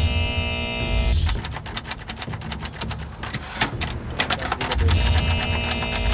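TV show bumper music: a held synth chord over a deep bass hit, then a run of fast, even ticking clicks like a clock or typewriter. The chord and bass hit return about five seconds in.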